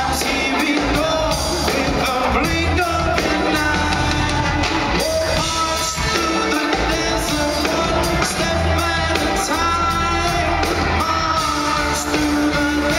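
Live band playing at full volume with a male lead vocalist singing into a microphone over steady heavy bass, amplified in a concert hall.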